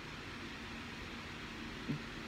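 Steady low background hiss of room tone, with a brief faint vocal sound just before the end.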